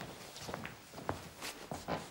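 A series of light, irregular knocks and taps.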